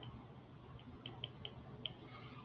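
Faint, light clicks of a stylus pen tapping on a tablet screen while handwriting, about half a dozen irregular ticks, most of them in the second half.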